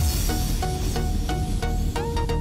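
Electronic background music with a steady beat, about three beats a second.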